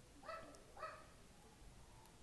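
A dog gives two short, high-pitched yips about half a second apart, faint in the room.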